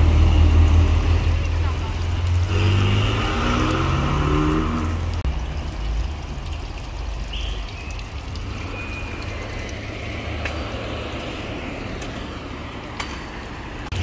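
Ferrari Portofino's twin-turbo V8 driving past: a deep, loud rumble for the first few seconds, its engine note rising as it accelerates away, then fading into a steady, quieter traffic hum of slow-moving cars.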